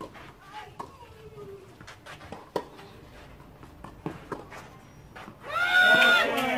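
Tennis ball hits in a rally on a clay court: sharp pops a second or so apart, the loudest about two and a half seconds in. Near the end, a loud shout from a person's voice.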